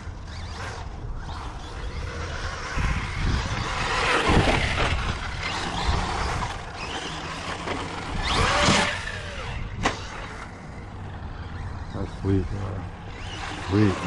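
Electric Traxxas 4x4 RC truck driven across grass: motor and tyre noise swelling and easing with the throttle, with a sharp knock about ten seconds in.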